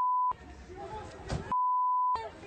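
Censor bleep: a steady, pure, high beep tone sounds twice, briefly at the start and again for about half a second near the end, with the rest of the audio cut out beneath it. Faint voices and background noise come through in the gap between the two beeps.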